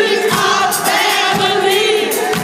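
Live disco band with several singers holding a long sung note, heard loud from within the concert audience.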